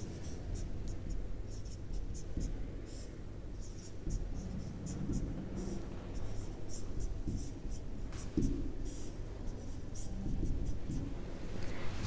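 Marker pen writing on a whiteboard: a run of short, quiet squeaks and scratches, one for each stroke of the letters, in an uneven rhythm.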